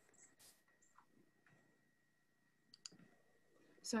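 Near silence, broken by a few faint clicks and a faint steady high whine; a voice starts right at the end.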